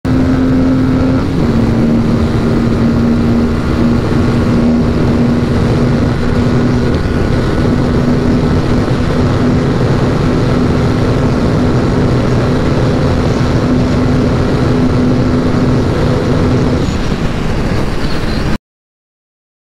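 Aprilia RS 457's 457 cc parallel-twin engine held at high revs near top speed, a steady engine note that dips slightly about a second in, under heavy wind rush on the microphone.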